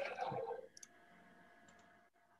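A voice trails off in the first half second, then a few faint, separate clicks over a quiet background.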